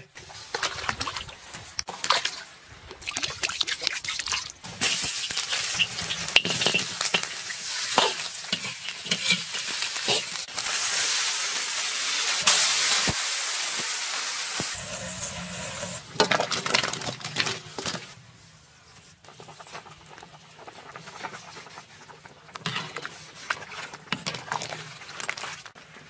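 Pork ribs cooking in a large iron wok. Utensils clack and scrape against the metal, with a loud hissing sizzle through the middle as the ribs are stir-fried with ginger and scallion. It drops to a quieter simmer of soup in the last third.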